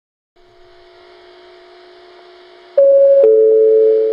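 A faint steady hum from a station platform PA speaker, then near the end a loud two-note chime, high then lower, that rings on with a slight echo: the lead-in chime of an automated JR Kyushu next-train announcement.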